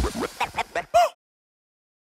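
A quick run of short pitched calls, each bending up and down in pitch, ending in one louder arched call about a second in; then the sound cuts off to silence.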